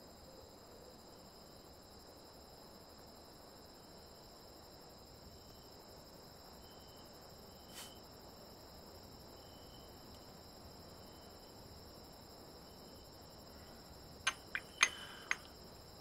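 Quiet background ambience with a faint, steady high-pitched trill running under it. A few sharp clicks or taps come close together about two seconds before the end, louder than anything else.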